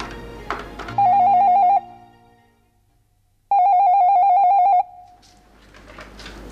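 Telephone ringing with an electronic warbling trill, twice: a short ring about a second in and a longer one a couple of seconds later, with near silence between them. Music fades out just before the first ring.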